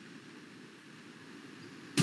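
Faint, steady room noise and hiss from an open video-call microphone, with no distinct event.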